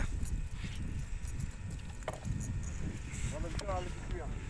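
Low, steady rumble of wind and water around a small open boat at sea, with a single short click about two seconds in and a faint voice near the end.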